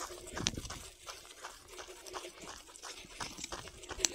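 Footsteps of a walker and a trotting Belgian Malinois on a dry dirt trail, irregular steps a few times a second with one sharper step about half a second in, and the dog panting.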